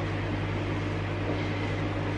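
A steady low electrical hum from a running kitchen appliance, even in level throughout.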